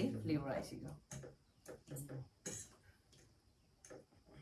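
A voice speaking for about a second, then quiet table sounds: a few faint short clicks and brief vocal noises.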